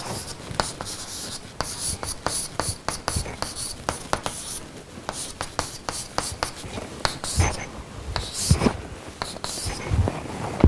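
Chalk writing on a blackboard: many quick taps and short scratchy strokes, in irregular bursts.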